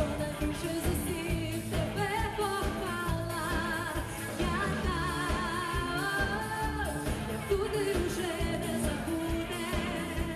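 A woman singing a pop-rock song live with a band of electric guitars, drums and keyboards.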